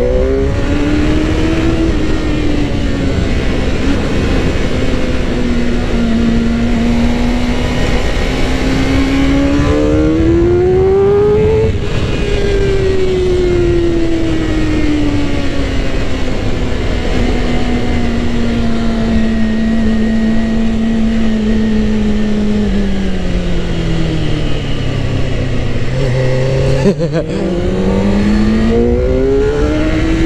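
Suzuki GSX-R600 inline-four engine under way, the revs climbing to a peak about twelve seconds in, then falling slowly for over ten seconds. Near the end the pitch breaks sharply and the revs climb again. Wind rush runs underneath.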